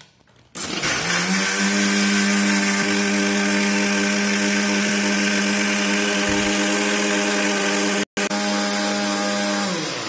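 Electric mixer grinder with a stainless steel jar running at speed, blending a liquid juice mix. It spins up about half a second in, rising briefly in pitch, then runs as a loud, steady hum. It winds down with a falling pitch near the end.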